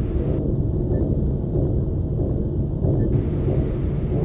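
Steady low rumble of background noise, with no distinct clicks or events.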